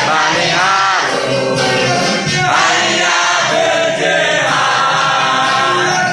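A standing group of pupils and teachers singing an anthem together in unison, with the singing loud and continuous.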